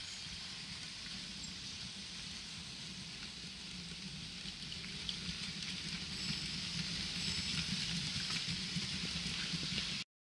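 Model railway freight train of flatcars rolling past on the track: a steady rattling hiss of small wheels on the rails over a low hum, growing louder from about halfway through, then cutting off suddenly at the end.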